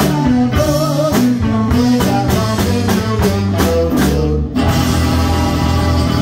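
Live rock band playing a funk-rock cover song, with drums, guitars, bass and saxophone. The band plays a run of short, evenly spaced accented hits, breaks briefly about four and a half seconds in, then plays on.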